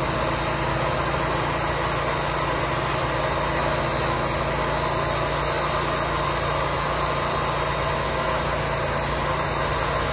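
Wood-Mizer portable band sawmill's engine running steadily at an even pitch, with no change in load or speed.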